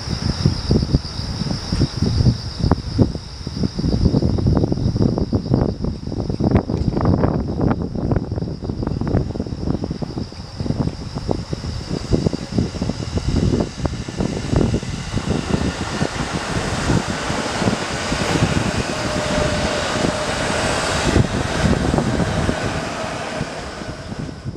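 JR West 221 series eight-car electric train passing close by: a loud, irregular clatter of wheels on the rails for the first fifteen seconds or so, then a steadier rushing rumble with a faint whine as the rear cars go by.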